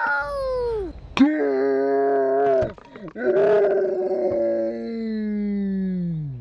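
A voice screaming in long, drawn-out cries: one falling off about a second in, then two held screams, the last one wavering, about three seconds long and sliding down in pitch at the end.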